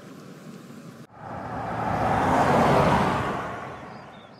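A car driving past: a rush of engine and tyre noise that starts about a second in, swells to a peak near three seconds and fades away.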